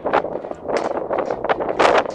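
Wind buffeting a smartphone's microphone: a rough rushing noise that swells and drops in several uneven gusts.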